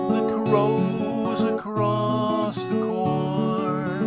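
Steel-string acoustic guitar strummed in chords as a folk-song accompaniment, the chords changing every half second or so.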